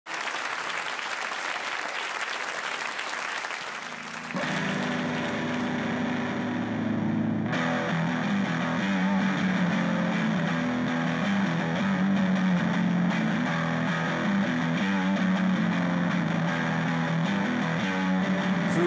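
Audience applause, then about four seconds in an electric guitar starts playing a steady rock riff that runs on.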